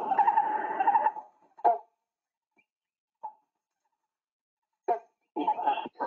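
Recorded great hornbill calls played back: one long call lasting about two seconds, then a few short single calls separated by near silence.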